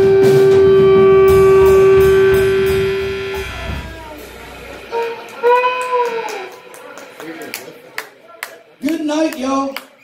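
Electric blues trio of guitar, Fender bass and drums holding the song's final note, which cuts off about three and a half seconds in and rings away. Then a single shout, scattered hand claps and a few voices.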